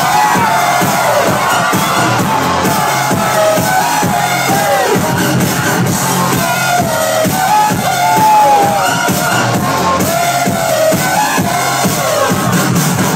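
Loud electronic dance music from a live DJ set, played over a nightclub sound system.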